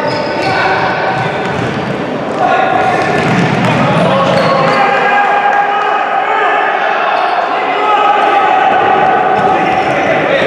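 Voices shouting and calling, echoing in a large sports hall, with thuds of a futsal ball being kicked on the court floor in the first couple of seconds. From about two and a half seconds in, long held shouts take over.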